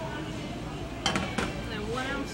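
Glass liquor bottle set down on a stainless bar counter: two sharp clinks about a third of a second apart, about a second in.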